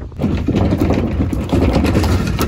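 Wheeled plastic garbage can being pulled over a gravel driveway: its wheels rattle and crunch over the stones, loudly, starting about a quarter second in.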